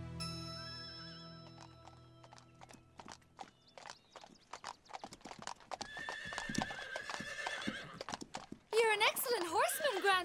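Background music fades away, then horse hooves clip-clop in a quick, uneven run. Near the end a horse whinnies loudly, its pitch wavering up and down.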